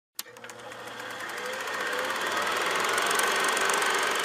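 A click, then a fast, even mechanical rattle that grows steadily louder.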